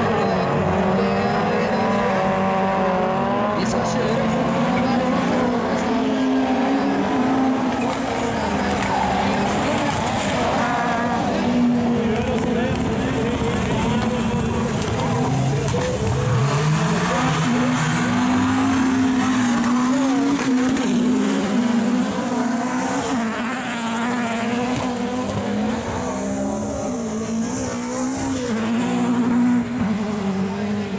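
Super 2400 rallycross cars racing as a pack, their engines revving hard with the pitch climbing and dropping again and again through gear changes and corners.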